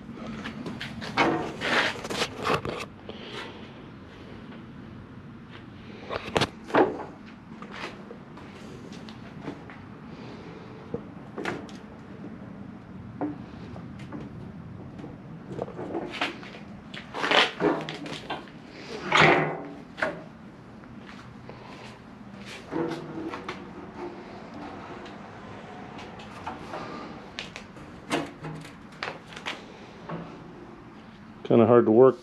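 Scattered metal clanks, knocks and rattles of an aluminum diamond plate sheet being shifted and clamped in a manual sheet-metal brake. The handling is busiest a couple of seconds in and again around the middle, with a few short ringing clangs.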